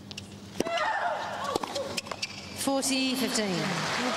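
Tennis serve: a sharp racket strike on the ball about half a second in, with the server's grunt, then a few more sharp ball impacts as the unreturned serve goes by. Crowd applause starts to swell near the end.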